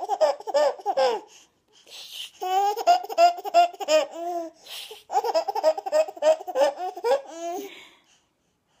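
Baby laughing hard in three long bouts, each a run of quick, high-pitched ha's, with short pauses for breath between.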